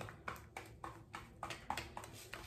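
Hair-colour mixing: a brush or applicator clicking and scraping against a small mixing bowl as the cream is stirred, in quick, even strokes about three times a second.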